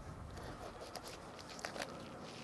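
Faint slicing and a few light clicks of a fillet knife gliding over the rib cage of a striped bass as the fillet is cut free.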